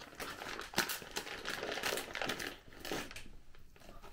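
Plastic Maltesers sweet bag crinkling as a hand rummages inside it for a chocolate. The rustling comes in irregular bursts and dies down for the last half-second or so.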